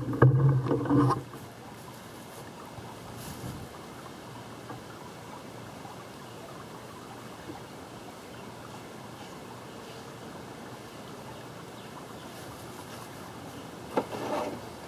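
A loud hum at a steady pitch for about the first second, cutting off suddenly, then a steady, even background hiss outdoors.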